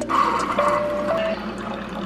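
Keurig coffee maker brewing, a stream of coffee pouring into a stainless steel tumbler, loudest in the first second, with background music over it.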